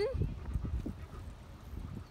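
Low, uneven wind noise buffeting a phone microphone outdoors, with the tail of a spoken word at the very start.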